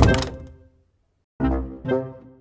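Background music of sharp struck chords with a deep bass hit, one at the start and two more close together near the end, each dying away.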